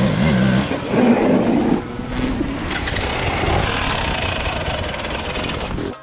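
Dirt bike engine running, most prominent in the first two seconds, then a steady din of outdoor background noise.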